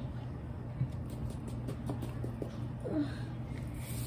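A steady low electric-fan hum, with faint light rattles of Tajín seasoning shaken from its plastic bottle during the first couple of seconds.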